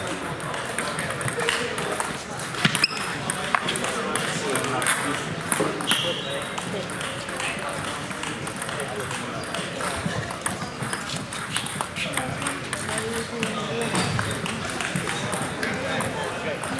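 Irregular sharp clicks of table tennis balls striking tables and bats from rallies at nearby tables, over indistinct background chatter.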